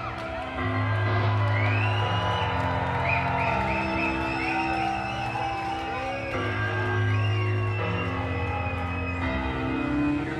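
Live black metal band playing a slow passage through the PA. Sustained low chords shift every few seconds, with high gliding tones over them.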